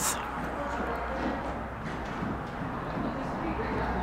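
Faint, muffled hoofbeats of a horse moving over the soft dirt footing of an indoor riding arena, under a steady low hum.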